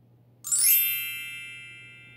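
Bright chime sound effect, a quick upward shimmer of many bell-like tones about half a second in, then a long ringing fade. It marks the change to the next picture.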